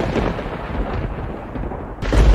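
Rolling thunder rumbling and slowly dying away.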